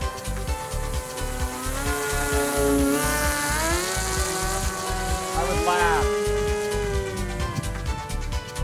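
Brushless electric motor and pusher propeller of an RC foam flying wing whining in a flyby, pitch rising about two seconds in, then dropping sharply about six seconds in as it passes. Background music with a steady beat plays underneath.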